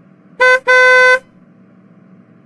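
Car horn honking twice in traffic, a short toot and then a longer blast, over a low steady rumble of traffic.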